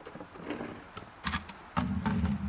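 Pink RV antifreeze starts pouring from a jug into a plastic bucket near the end, a steady splashing pour. Before it there are a couple of faint clicks.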